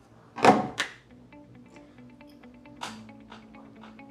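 Two sharp knocks about a third of a second apart, a smartphone being set down on a glass tabletop, then faint music with steady held notes and a softer knock a little before the three-second mark.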